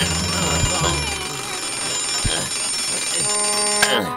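Twin-bell alarm clock ringing continuously. Near the end comes one sharp click as a hand slaps the top of the clock, and the ringing stops.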